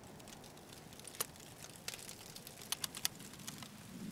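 Wood fire crackling faintly, with scattered small pops and a few sharper snaps through the middle.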